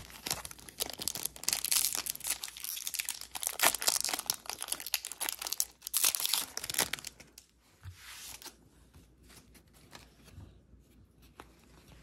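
A foil trading-card pack wrapper being torn open and crinkled, in dense crackly bursts for about the first seven seconds. Then quieter, scattered clicks and rustles of the cards being handled.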